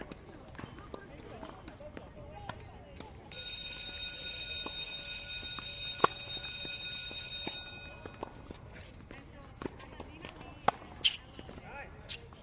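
Tennis balls struck by rackets in a baseline rally: sharp pops a few seconds apart, the loudest about halfway through, a few quicker ones near the end. A steady high-pitched tone sounds over the rally for about four seconds, starting a few seconds in.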